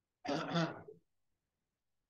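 A person clearing their throat: one short, two-part rasp lasting under a second.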